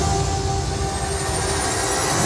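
A build-up sweep in the reveal music: a rushing noise with a thin high whistle that climbs steadily in pitch from about a third of the way in, swelling into the music that follows.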